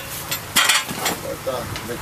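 Steel plastering trowel scraping wet cement stucco for a brown coat, with one loud scrape about half a second in.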